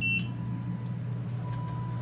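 A short high beep as the lobby button on a Northern (Niagara-labelled) traction elevator's car panel is pressed and registers, over the steady hum of the cab's loud ventilation fan. A faint steady high tone comes in about halfway.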